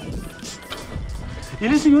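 Mountain bike rolling over a stone-block paved alley: a clattering, rumbling ride noise with many small knocks from the tyres and frame. A man starts speaking near the end.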